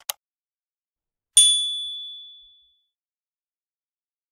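A short click, then a single bright bell-like ding about a second and a half in that rings out and fades over about a second: the click-and-ding sound effect of a subscribe-button animation.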